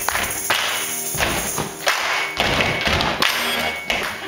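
Closing bars of a live group performance of a rock song: about six loud thumping hits, spaced roughly half a second to a second apart, with sustained guitar and voice notes ringing between them.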